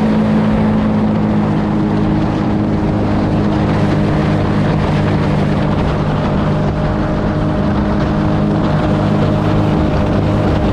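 Mini jet boat's engine running steadily at cruising speed, with water rushing past the hull close by.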